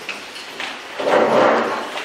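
A loud burst of rustling, scraping noise, strongest from about a second in.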